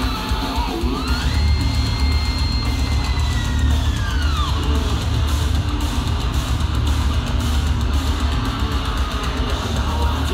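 Heavy metal band playing live: distorted guitars, bass and a heavy drum kit, with a high sustained lead note that slides up about a second in, holds, and bends down around four seconds in.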